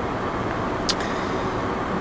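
Steady road and tyre noise with engine hum inside a car cabin at motorway speed, with one brief click about a second in.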